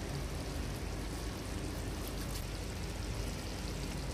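Fish masala gravy simmering in a nonstick pan: a steady hiss with a few faint small pops.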